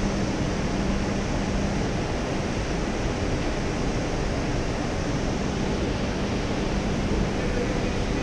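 Steady industrial machinery noise, an even rushing sound with a faint low hum running under it.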